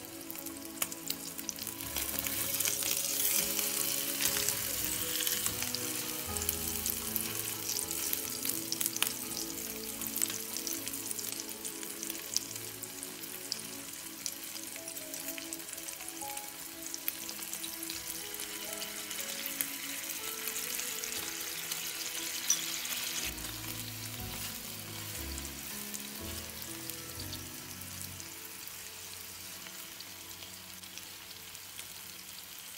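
Two slices of Spam frying in oil in a rectangular nonstick pan: a steady sizzle full of small crackles and spits. It gets louder about two seconds in and eases off in the last quarter.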